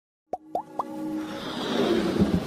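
Logo-intro sound effects: three quick rising 'bloop' pops about a quarter second apart, each a little higher than the last. After them a swelling whoosh builds under electronic music.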